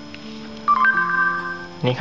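Electronic two-note chime from the Galaxy S4 clone phone's Google voice search, a lower tone joined a moment later by a higher one, held for about a second, marking the end of listening as the spoken query is taken. Soft background music with sustained notes runs underneath.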